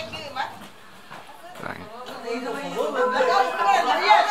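Voices of a crowd chatting in a group. Near the end, held musical notes start up and carry on.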